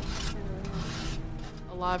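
A metal spoon scraping sediment across a stainless steel pan. There are two rasping scrapes, the second about a second in.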